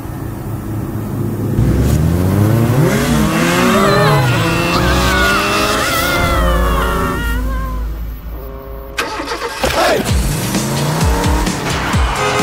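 Sound-effect engine of a motor vehicle revving and racing off with tyre squeals, mixed with music. The engine pitch sweeps up and down several times, thins out briefly about three quarters of the way through, then revs again.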